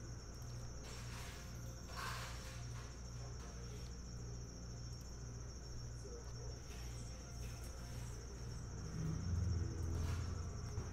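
Faint steady high-pitched electrical whine over a low hum that pulses about twice a second.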